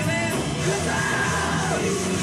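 Live rock band playing: electric guitars, bass and drums with cymbals, a singer yelling and singing over them and holding one note about a second in.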